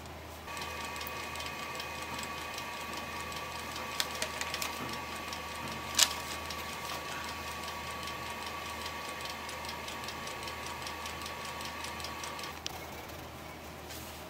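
Robust wood lathe running with a steady whine and a fast, even ticking, with a sharp click about four seconds in and a louder one near the middle; the running stops about a second and a half before the end.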